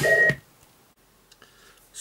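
A short steady electronic beep as the preceding sound cuts off, then near-quiet room tone with a few faint clicks about a second and a half in.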